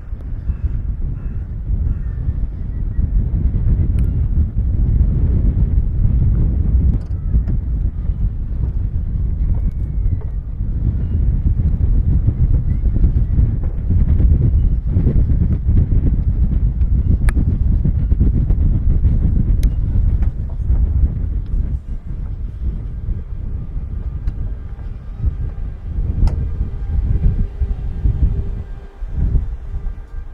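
Wind buffeting the camera microphone on an open sea pier: a heavy low rumble that swells and eases unevenly. Faint steady tones come in near the end.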